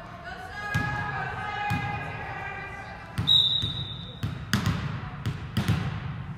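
Volleyball in an echoing gym. Players' voices call out, then a referee's whistle gives one steady blast about a second long, about halfway through. It is followed by a quick run of sharp smacks of the ball being hit and bouncing.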